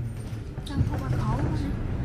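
Low, steady engine and road rumble inside a moving city bus, with people talking over it from about a second in.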